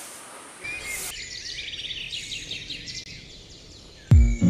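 Birds chirping in many quick calls over a steady background hiss of outdoor ambience.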